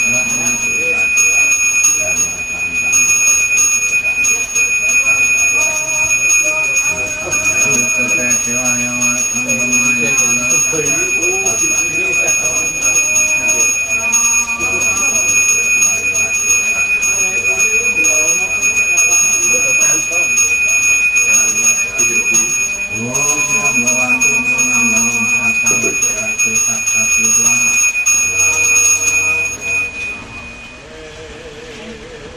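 A priest's hand bell (genta) rung continuously in a steady high ring, with a voice chanting over it. The ringing stops shortly before the end.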